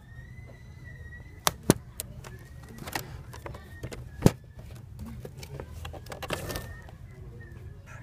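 Framed signs knocking against one another as they are flipped through in a cardboard display box: a few sharp clacks, the loudest about four seconds in, over a low steady background hum.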